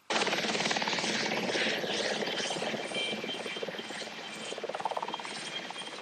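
Coastguard search-and-rescue helicopter running, its rotor chop a fast, dense pulsing that cuts in suddenly and eases slowly over the seconds, with a faint high whine about halfway through.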